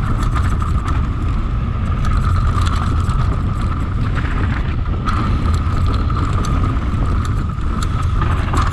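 Mountain bike descending a dirt and loose-rock trail: tyres rolling over the ground, wind buffeting the microphone, and many short rattles and clicks from the bike over bumps. A steady high buzz runs under it.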